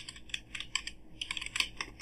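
Computer keyboard being typed on: a quick, irregular run of key clicks as a single word is typed out.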